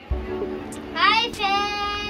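A child's voice singing a long note, gliding up about a second in and then held.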